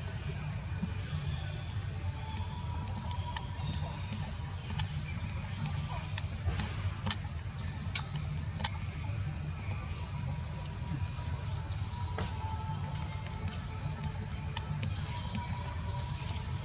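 Steady high-pitched drone of forest insects, two unbroken shrill tones, over a low rumble, with a couple of sharp clicks about halfway through.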